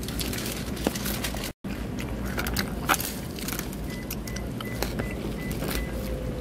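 Light clicks and crackles of a plastic fork stirring a salad in a clear plastic bowl, over a steady low background hum. The sound cuts out completely for a moment about one and a half seconds in.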